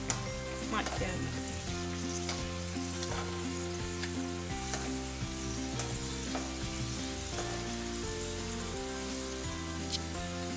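Cashew nuts and raisins sizzling steadily as they deep-fry in hot oil in an aluminium kadai. A wire skimmer stirs them, clinking against the pan a couple of times near the start.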